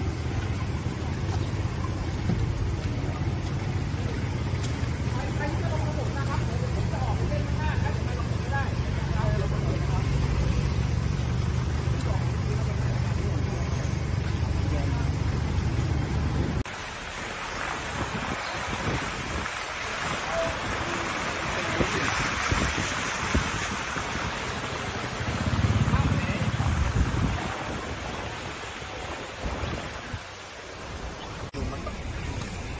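A truck engine runs steadily under a few voices. About halfway through it cuts off abruptly. What follows is a steady hiss of running floodwater and wind on the microphone, with a brief low rumble a few seconds before the end.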